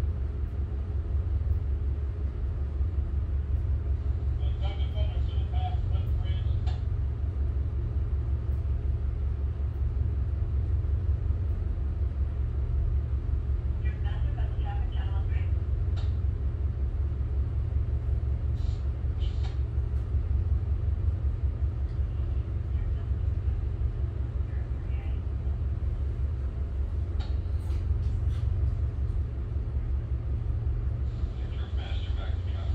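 Tugboat's diesel engines running with a steady low drone, heard inside the wheelhouse.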